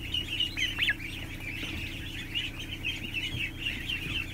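A flock of ducklings and goslings peeping constantly, many short high peeps overlapping, with a couple of rising peeps about a second in. A steady low hum runs underneath.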